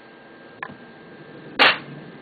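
A faint click, then a single loud, sharp crack about one and a half seconds in that dies away quickly.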